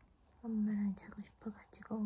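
A woman's soft, hushed voice talking in short drawn-out phrases, with one held note about half a second in and another near the end.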